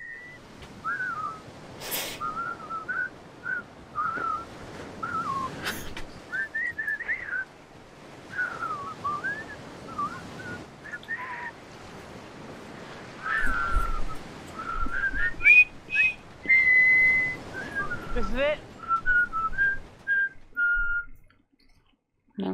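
A person whistling a meandering tune in short phrases, over a faint hiss, with a few sharp clicks and low thuds in the second half.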